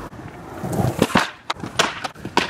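Skateboard wheels rolling on pavement, then several sharp clacks of the board hitting the ground, as in trick attempts.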